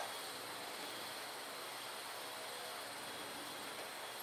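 Faint, steady background hiss: room tone with no distinct sound event.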